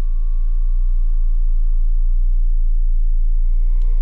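A deep, steady low drone, a single pure bass tone from a suspense score, holding loud and unchanging. A faint click comes near the end.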